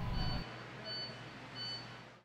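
Faint, short, high-pitched electronic beeps repeating about once every 0.8 s, each in two tones, over a low steady hum.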